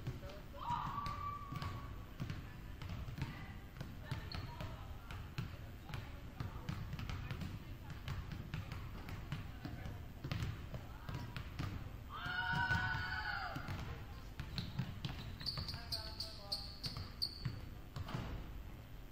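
Several basketballs bouncing irregularly on a hardwood gym floor in a large gym, with players' voices; the loudest is a call about twelve seconds in.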